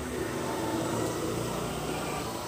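Steady low background hum with no distinct sounds standing out.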